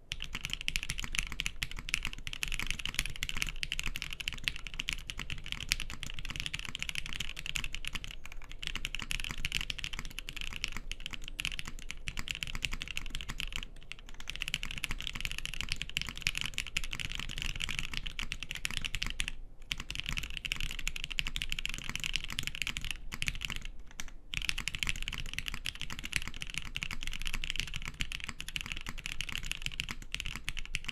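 Fast, continuous typing on a custom Matrix Falcon 6xv2.0 mechanical keyboard: Tangerine linear switches with Cherry top housings, lubed with Krytox 205g0, on an FR4 half plate under GMK keycaps. It makes a dense stream of keystroke clacks, broken by a few brief pauses.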